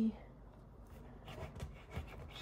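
A knife cutting through a soft, squidgy rolled cinnamon roll dough log, with faint scraping strokes and a light click of the blade on the counter near the end.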